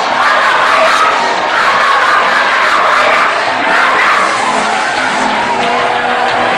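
Large congregation crying out and shouting together in a big hall, a loud, steady mass of many overlapping voices.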